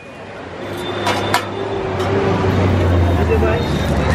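Street-stall ambience: indistinct background voices over a steady low rumble, with two sharp clinks about a second in.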